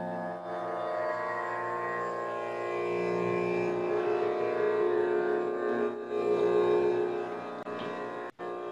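Tanpura drone: sustained strings sounding steadily together with a rich, buzzing tone.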